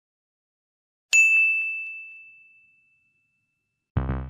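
A single bright, bell-like ding, a logo-sting sound effect, struck about a second in and ringing on one high tone as it fades away over about a second and a half.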